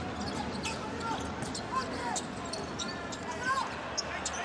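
Live basketball game sound on a hardwood court: the ball being dribbled, with short sharp sneaker squeaks and a steady murmur of the arena crowd.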